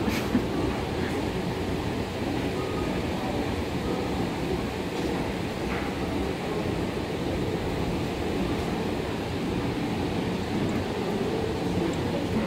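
Steady, even rumble and hum of ambient noise inside a glass-walled railway station footbridge as someone walks through it, with a couple of faint clicks.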